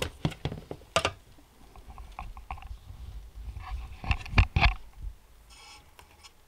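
Light clicks and taps of handling on a small sluice box: fingers picking through wet gravel and small stones on its rubber riffle matting. The taps are scattered, with a cluster of louder knocks about four seconds in and a short rubbing hiss near the end.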